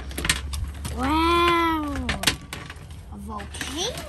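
A child's drawn-out wordless vocal sound, about a second long, rising then falling in pitch. Around it come sharp clicks and crackles of a soft red plastic mold being pulled off a plaster volcano cast on a metal baking tray.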